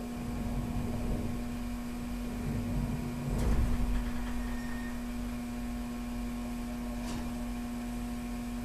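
A steady low hum with no music, broken by a soft thump about three and a half seconds in and a brief click near seven seconds.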